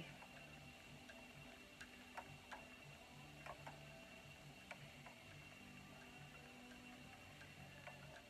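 Near silence, with faint light ticks coming at irregular intervals from a spinning wheel while it plies yarn, over a faint low hum.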